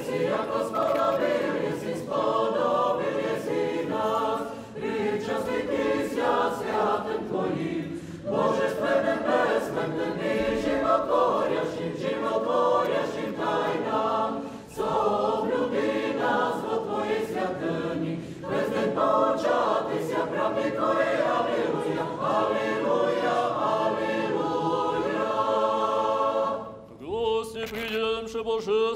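Orthodox liturgical choir singing unaccompanied, in phrases with short breaks between them. About a second before the end the choir stops and a single man's voice begins chanting.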